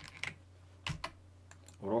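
A few single clicks of computer keys and a mouse during editing, the loudest about a second in.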